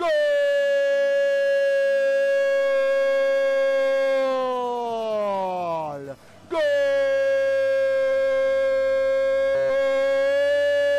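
A football commentator's drawn-out goal cry, "gooool", one vowel held steady for about six seconds before its pitch sags and breaks off, then after a quick breath a second long held cry. It hails a converted penalty.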